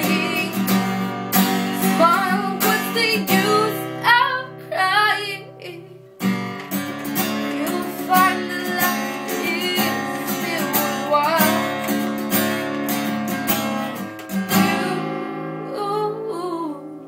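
Acoustic guitar strummed in a slow, even rhythm under a woman's solo singing voice. The playing breaks off briefly about six seconds in, then picks up again.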